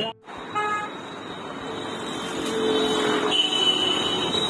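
Roadside traffic noise with a short vehicle horn toot about half a second in, then a steadier engine or horn tone from a passing vehicle.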